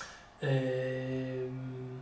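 A man's voice holding one steady, unbroken hesitation hum for about a second and a half, after a short click at the very start.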